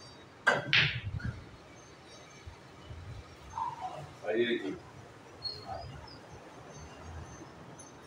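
Pool cue striking the cue ball about half a second in, with a sharp click of ball on ball just after and a few lighter knocks as the balls roll and touch. A short voice-like sound follows a few seconds later.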